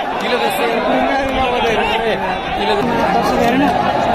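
A large crowd of cricket spectators chattering, with many voices overlapping in a steady din.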